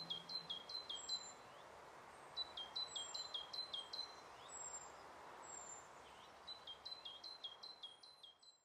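Faint bird song: three short phrases, near the start, in the middle and near the end, each of about five high whistled notes that step down in pitch, with a few thinner, higher down-slurred calls between them, over soft background noise.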